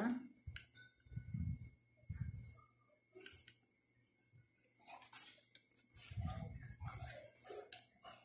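Faint small clicks and handling knocks as the metal connector of a microphone cable is fitted onto the base of a handheld microphone, with low thumps from the hands and cable.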